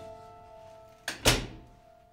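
A door shutting about a second in: a light click and then a heavy thud, over soft sustained background music notes.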